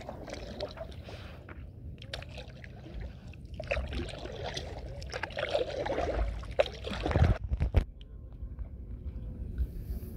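Stand-up paddleboard paddle dipping and pulling through calm lake water, with soft splashing and sloshing, and a few short knocks about seven seconds in.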